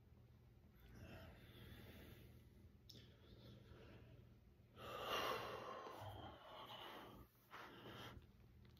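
A man's breathing as he recovers between sets of push-ups: soft breaths, then a louder exhale about five seconds in and a shorter one near the end.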